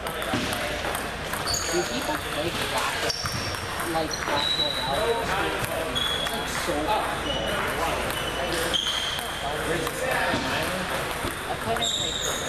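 Table tennis balls clicking off tables and paddles across a busy gym hall, with short high squeaks from shoes on the wooden floor scattered throughout, over a murmur of voices.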